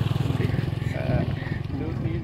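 A man imitating a motorcycle engine with his voice, a low steady buzzing drone, with a short voiced sound about a second in.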